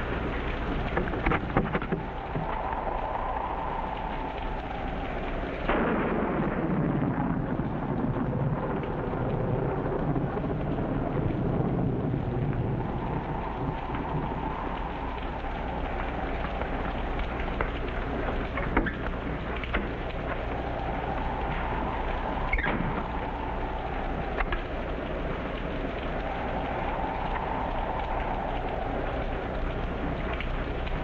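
Steady heavy rain, with a thunderclap about six seconds in that breaks suddenly and then rumbles lower and fades over several seconds. A few sharp knocks sound over the downpour.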